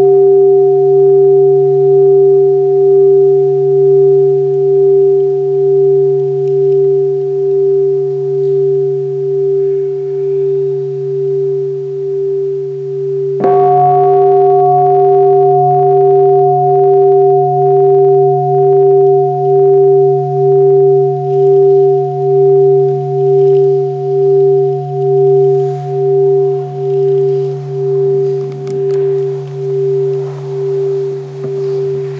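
Large brass Buddhist bowl bell ringing with a deep tone and a few higher overtones, fading slowly with a steady wavering pulse. About halfway through it is struck again, and the fresh ring swells and carries on.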